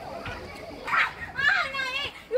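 Children's voices calling and shouting, with loud high-pitched calls about a second in and again near the end.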